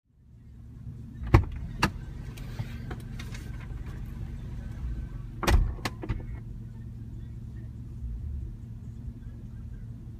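A car idling, heard from inside the cabin as a steady low hum. A couple of sharp knocks come about a second and a half in, and a louder thump with a few clicks comes about halfway through.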